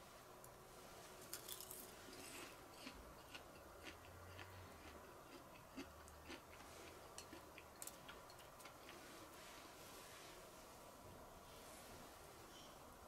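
Faint crunching as a crisp, charcoal-grilled tara-no-me (Japanese angelica tree shoot) is chewed: an irregular scatter of small crackling clicks.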